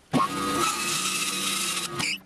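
Bandsaw cutting through a block of spalted silver birch: a steady, loud cutting noise over the saw's running hum. It begins just after the start and stops abruptly as the blade exits the wood.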